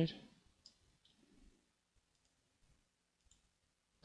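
Faint, scattered computer mouse clicks as the software is operated.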